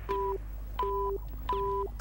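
Electronic alert signal: three evenly spaced beeps, each a low and a high tone sounding together for about a third of a second, sounding as a code-red alarm.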